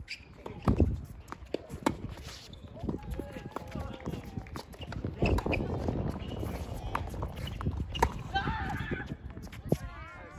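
A tennis point played out on a hard court: sharp pops of rackets striking the ball and the ball bouncing, with players' footsteps and short calls from the players between shots.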